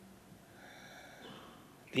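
A short pause in a man's speech: low room tone with faint traces of sound, and his voice comes back right at the end.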